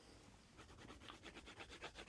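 Close-up drawing on paper: quick back-and-forth sketching strokes, about six a second, beginning about half a second in.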